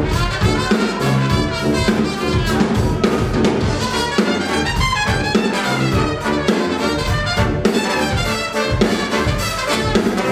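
Live brass band playing: trumpets, trombone, saxophone and sousaphone over a drum kit keeping a steady beat.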